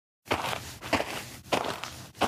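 Footsteps sound effect, about two steps a second on a hard floor, starting a quarter second in after a dead-silent gap.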